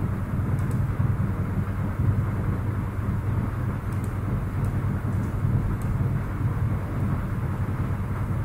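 Steady low rumble of room background noise, with a few faint clicks scattered through it.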